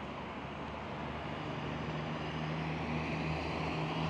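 Steady road-traffic noise from a city avenue below. A low engine hum comes in about a second in, and the whole grows slowly louder.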